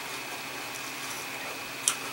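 Quiet room tone with a faint steady high hum, and one short sharp click near the end: a mouth sound from chewing a raw Sweet Heat pepper.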